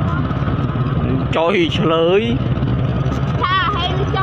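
Motorbike engine running steadily with road noise while riding, heard from on the bike, with a voice speaking twice over it.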